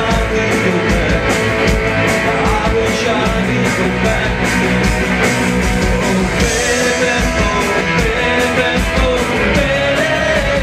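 A punk rock band playing live and loud: distorted electric guitars over a fast, driving drumbeat, with a man singing lead.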